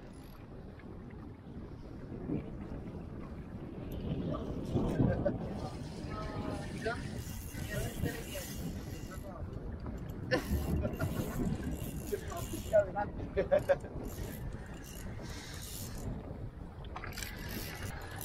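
Wind noise on the microphone and choppy sea around a small inflatable boat, with scattered indistinct voices.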